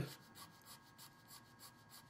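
Graphite pencil making short, quick strokes on drawing paper: faint scratching, about three strokes a second.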